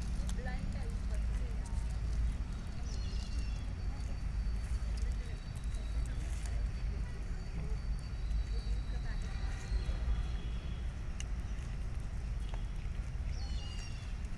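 Faint, distant voices talking over a steady low rumble, with a few faint clicks.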